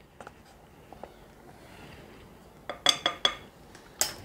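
Faint clicks of a plastic measuring spoon handling ground cinnamon, then a quick run of four or five sharper clinks about three seconds in.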